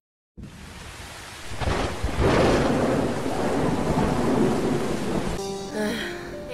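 Thunder rumbling with rain pouring down, swelling suddenly about a second and a half in and easing off near the end as music comes in.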